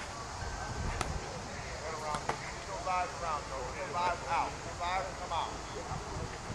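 Distant, indistinct voices calling across an open practice field. Two sharp knocks come about a second in and just after two seconds.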